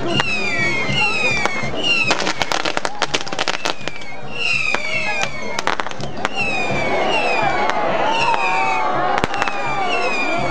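Fireworks castle tower (castillo) going off: a whistling firework gives a falling whistle over and over, about once a second. Two bursts of rapid crackling firecrackers break in, about two seconds in and again near the middle.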